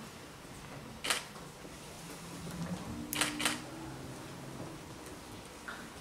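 Quiet room tone broken by a few short, sharp clicks: a single one about a second in, then a pair around three seconds with a faint low tone alongside it.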